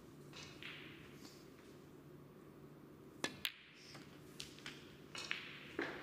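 Snooker balls clicking: a sharp cue-tip strike on the cue ball a little over halfway through, followed a fraction of a second later by the click of the cue ball hitting an object ball, then a few more ball knocks near the end. A steady low hum lies underneath.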